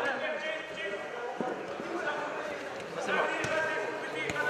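Players and spectators shouting across a large covered sports hall during a five-a-side football match, with a couple of sharp thuds of the football being kicked on the artificial turf.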